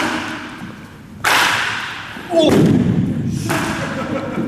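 Sharp cracks of a bat hitting a pitched baseball, ringing in a large indoor hall: one about a second in and another near the end, with a voice calling out in between.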